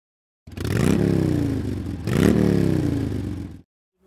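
Motorcycle engine revved twice: each time the pitch climbs quickly and then falls back over about a second. It starts about half a second in and cuts off abruptly shortly before the end.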